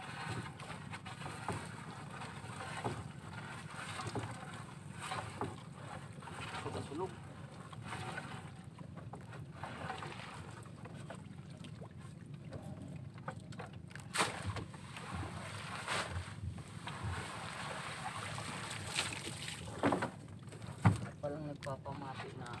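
A net trap being hauled by hand over the side of a small wooden outrigger boat: rustling net, water and scattered knocks against the hull, with a sharp knock near the end. A steady low hum runs underneath.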